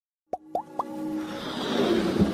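Animated logo intro's music and sound effects: three quick upward-gliding pops about a quarter-second apart, then a whoosh that swells and grows louder.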